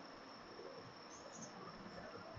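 Near silence: faint room tone with a thin, steady high-pitched tone running through it.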